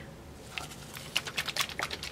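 Light, irregular clicks and taps of paint bottles being handled and set down, several a second, starting about half a second in.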